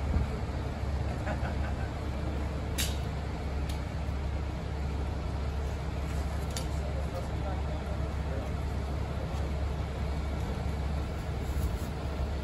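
Fire trucks' diesel engines running steadily, a low drone, while the aerial ladder is in use. A few sharp clicks come through about three seconds in.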